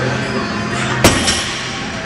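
Loaded barbell set back down onto wooden blocks at the end of a block-pull deadlift, landing with one sharp impact about a second in and a short ring after it.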